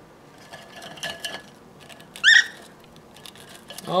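A cockatiel rummaging among cookies in a ceramic jar, with faint scratching and clicking. A little past halfway comes one short chirp that rises and falls, the loudest sound.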